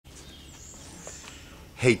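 Faint outdoor background with distant birds chirping in thin, high notes.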